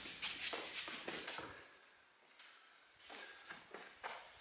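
Faint scuffs and light clicks of a climber's shoes and gear on sandstone, with a near-silent gap in the middle.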